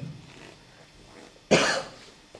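A man coughing once, short and sharp, about one and a half seconds in, close to a table microphone.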